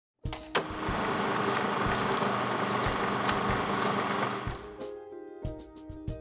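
Logo intro sting: a dense, rattling noise over low regular thuds, with a sharp hit just after the start. About five seconds in it gives way to music with held notes and regular percussive hits.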